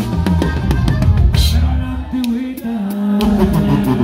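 Live regional Mexican band playing an instrumental passage: drum kit and cymbal hits over bass and guitar for the first couple of seconds, then a held low bass note.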